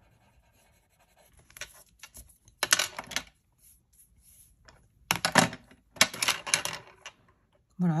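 Drawing tools rubbing briskly over drawing paper in two bursts of quick scratchy strokes, the second burst longer. These are the sounds of blending colour on the paper.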